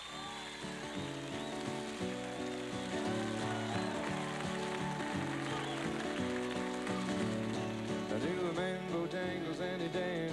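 Two acoustic guitars playing an instrumental folk-country introduction, with steady picked and strummed chords.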